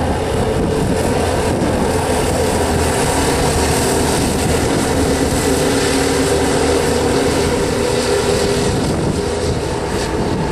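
Several racing kart engines running together at speed on a dirt oval, their tones overlapping in a steady drone.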